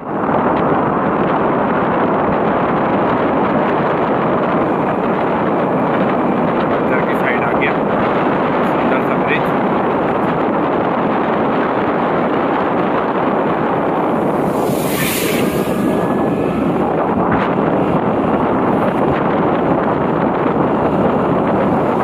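Steady, loud wind rush on the microphone of a moving motorcycle, covering its engine and tyre sound, with a brief sharper hiss about two-thirds of the way through.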